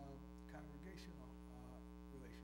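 Steady electrical mains hum, with faint, indistinct speech-like sounds over it.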